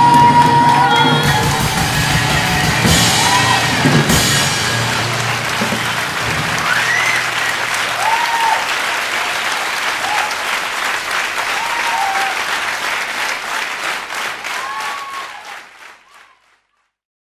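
A jazz band finishes a song on a final held note with a couple of cymbal crashes. Audience applause and cheering follow, with a few whistles, and fade out over the last couple of seconds.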